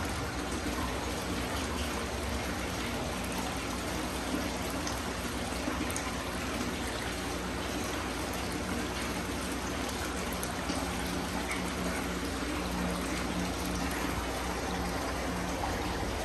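Water from the filtration flow running steadily into a large fish tank, a constant trickling stream with a faint low hum beneath it.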